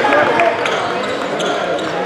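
Basketball bouncing on a hardwood gym floor as players bring it up the court, with short ticks over a steady murmur of spectator voices echoing in a large hall.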